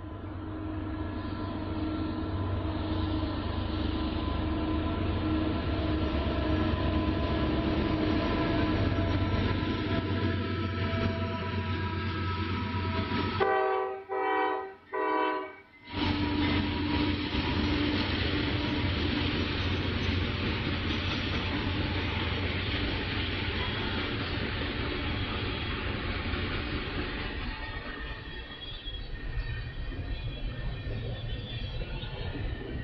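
Freight train passing behind a diesel locomotive. The horn sounds a long chord over the rumble of the train for the first dozen seconds, then gives a few short blasts about halfway through. After that comes a steady rumble of the cars rolling by.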